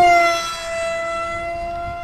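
Electric motor and propeller of a scratch-built foam RC F-15 model whining at high throttle as it climbs. The whine is loudest right at the start after a stepped rise in pitch, then eases slightly and holds steady.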